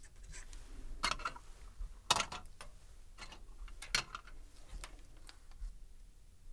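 Scattered light clicks and taps of plastic petri dishes and a swab being handled on a desktop. The sharpest clicks come about one second, two seconds and four seconds in.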